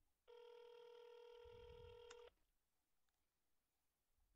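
Telephone ringback tone heard over the phone line as the call rings through: one steady ring of about two seconds, starting a moment in.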